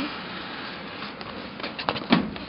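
A cardboard box of dryer sheets handled by hand at a dryer: soft rustling over a steady hiss, with a few light taps near the end.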